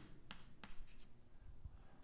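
Faint writing strokes, a few short scratches in the first second, over quiet room tone.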